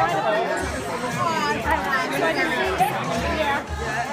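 Several people talking over one another, with music playing in the background.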